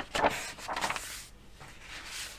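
A page of a large paper instruction booklet being turned: a click, then a papery rustle and slide lasting about a second.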